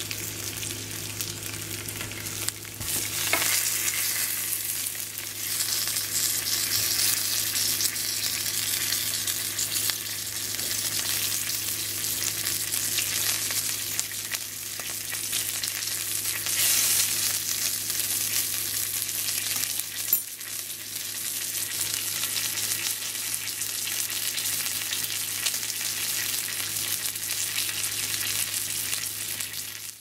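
Strips of homemade hickory-smoked bacon sizzling and crackling in a nonstick frying pan, growing louder about three seconds in.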